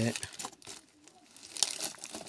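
Plastic wrapping crinkling as a cellophane-wrapped paper packet is handled, in short crackly rustles that pick up about a second and a half in.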